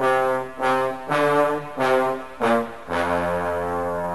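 Brass instrumental introduction: five short, separated chords, then a long held chord beginning about three seconds in.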